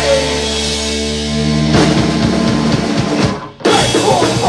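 Hardcore punk band playing live through a club PA: a held, ringing guitar chord with bass, drum hits joining about halfway through, then a sudden brief stop near the end before the full band comes back in.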